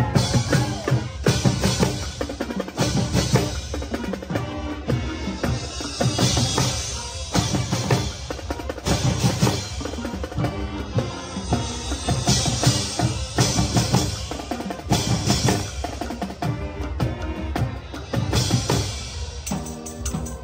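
A youth marching band (banda marcial) playing live: wind instruments holding chords over a dense beat of snare and bass drums.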